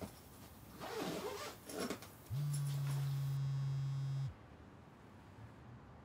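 Fabric and bag rustling as clothes are packed, then a mobile phone buzzing on vibrate for about two seconds, an incoming call.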